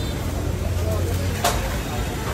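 Busy shop-stall background noise: indistinct voices over a steady low rumble, with one sharp click about one and a half seconds in.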